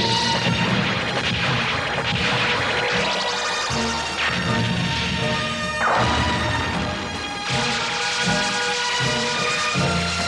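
Animated space-battle sound effects: a battleship's gun turrets firing and enemy ships hit, heard as repeated crashing blasts with a couple of falling sweeps, over dramatic background music.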